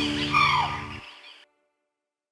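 The last notes of an Andean folk band with violin and harp fade away, with a high sliding note about half a second in, and stop completely about a second and a half in.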